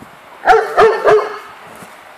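A large dog barks three times in quick succession about halfway through, during rough play with another dog.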